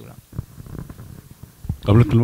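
Speech only: low, indistinct voices through a meeting-room microphone, then a louder man's voice starting near the end.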